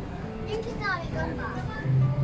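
Indistinct voices, among them a child's, against restaurant background noise. A steady low musical tone comes in near the end.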